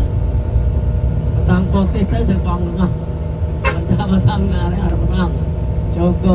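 Steady low rumble of a coach bus's engine and road noise, heard from inside the passenger cabin, with a person's voice talking over it.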